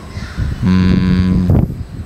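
A man's voice holding one drawn-out filler sound at a flat pitch for under a second, followed by a short spoken syllable.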